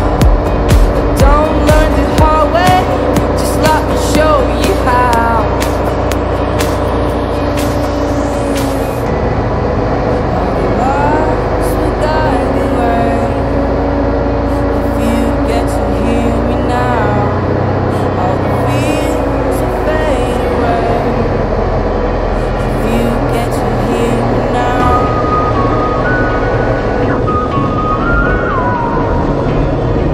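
Pop music with a sung melody over a beat; the beat strokes are strongest in the first few seconds.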